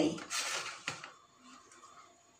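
Plastic kitchen containers handled on a metal tray: a short scrape followed by one sharp click just under a second in.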